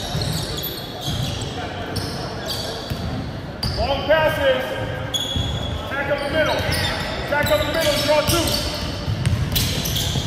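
A basketball dribbled on a hardwood gym floor, with short squeaking chirps from sneakers on the court and voices, all echoing in a large gym.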